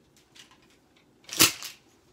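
Clothes hangers clacking together as a bunch of them is carried and set down: a few light clicks, then a loud double clatter about one and a half seconds in.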